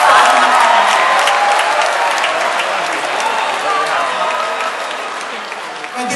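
Large audience applauding, with a few voices calling out over the clapping; the applause slowly fades.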